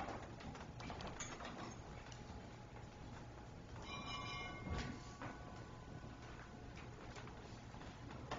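Footsteps and shuffling of several people walking on a wooden floor, a scatter of soft knocks and clicks. About four seconds in comes a brief high ringing tone that fades over a couple of seconds.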